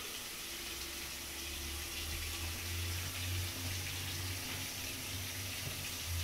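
Kitchen sink tap running hot water in a steady stream, with a low steady hum under the rush of water.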